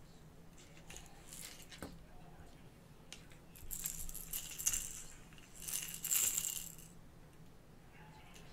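A Trophy Cat Kitty Call catfish rattle rattling in two short bursts as it is handled on the line, with a click and faint handling noise between.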